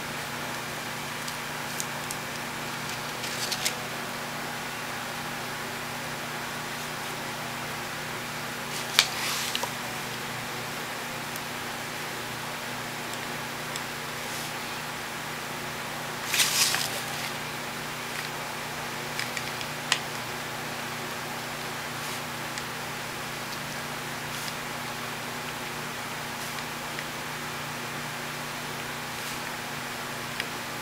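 Steady background hiss with a faint constant hum, broken by a few brief rustles and taps from handling paper and a paintbrush at a table.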